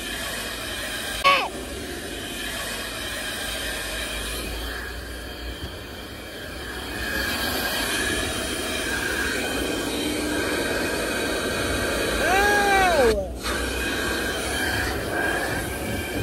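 Car-wash vacuum running steadily, a drone with a steady whine over it, getting louder about halfway through. Near the end a short voice sound, and the vacuum's sound cuts out for a moment.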